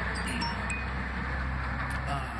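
Steady low outdoor rumble with a few short, high ringing tones at different pitches about half a second in.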